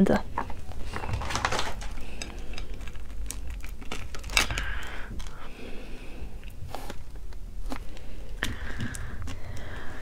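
Close-miked fingers handling sauce-coated braised shrimp, with irregular small crackles and sticky clicks from the shells as they are lifted from the plate and turned over.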